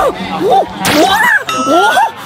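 Edited-in comic sound effects: a brief swish about a second in, then a bright ringing 'ding' from a second and a half in, over a man's wordless rising vocal sounds.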